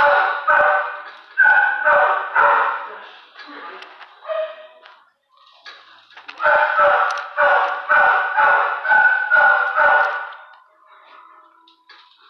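A dog barking in two runs of short, repeated barks, about two a second, with a pause of a few seconds between the runs.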